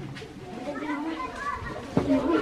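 A group of schoolchildren talking among themselves, their voices overlapping in low chatter.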